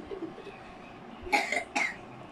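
A child coughing twice in quick succession near the end, two sharp, loud coughs about half a second apart, the first a little longer.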